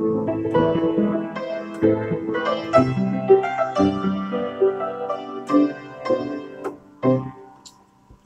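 A 1940s upright piano being played, with a run of single notes and chords, the last ones near the end ringing away. The piano is out of tune.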